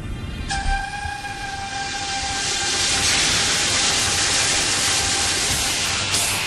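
Intro of a wrestling entrance theme: a held pitched note comes in about half a second in, under a wash of noise that swells over the next few seconds and then holds.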